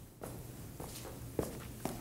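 Footsteps of a person walking up to a lectern microphone, with two sharper knocks in the second half, over a faint steady low hum.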